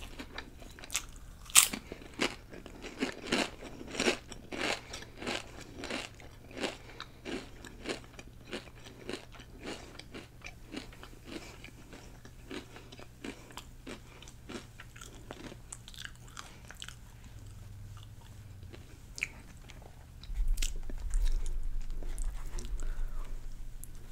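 Potato chips crunched and chewed close to the microphone: a rapid run of crisp crunches, loudest early on and thinning out as the chewing goes on. Near the end a louder low rustling comes as the soft sub roll is handled.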